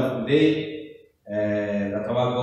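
A man singing a slow worship song into a handheld microphone, holding long notes, with a brief break about a second in.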